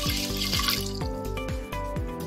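A stream of water pouring into an aluminium pressure cooker over dry split lentils, fading out about a second in. Background music with a steady beat plays throughout.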